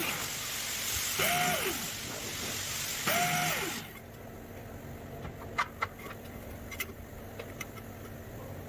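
Small angle grinder triggered in three short bursts in the first four seconds, its motor winding up and down each time with a hiss. A few light clicks follow as small stainless steel pieces are set down on the steel plate.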